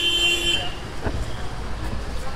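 Street traffic: a vehicle horn sounds briefly as a steady tone for about half a second at the start, then the steady low noise of passing vehicles, with a single knock about a second in.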